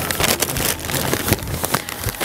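Paper sack of wood charcoal rustling and crinkling as it is lifted and handled, a dense run of short crackles.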